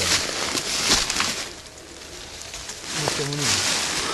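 Rustling and crackling in dry leaves and brush, with a quieter lull in the middle and a brief voice about three seconds in.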